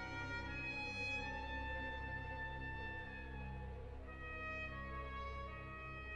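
Symphony orchestra playing a slow contemporary passage of held, overlapping notes that shift slowly in pitch, easing a little in level after about three seconds.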